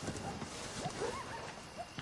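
Night-time outdoor ambience: a soft, even hiss of light rain with scattered short, rising chirp-like calls from small animals.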